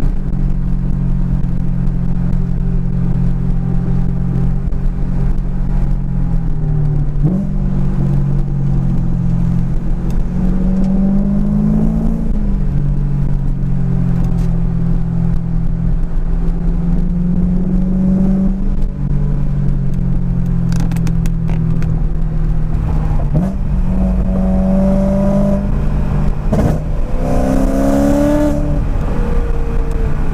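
Supercharged BMW M3's engine heard from inside the cabin, running steadily under way, its pitch dipping and rising several times as the throttle comes off and back on. A few short clicks after the middle and a brief hiss near the end.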